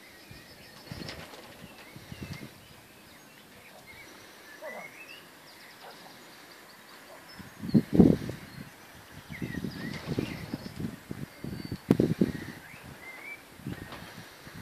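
Wild birds singing and chirping in the background, with irregular low thuds and rumbles that are loudest about eight and twelve seconds in.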